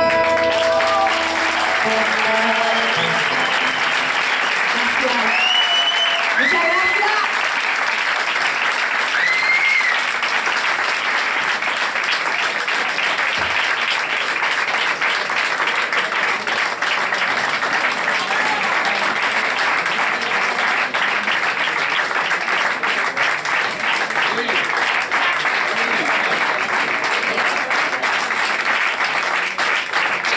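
Small audience applauding steadily, with a few whistles in the first ten seconds or so. The last acoustic guitar chord fades out at the very start.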